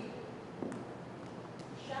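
A pause in a live stage performance: quiet hall room tone with a soft knock about two-thirds of a second in and a fainter click later, then a voice starting at the very end.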